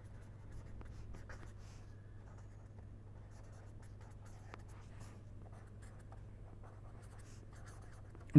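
Faint scratching of a pen writing on paper, in short irregular strokes, over a steady low hum.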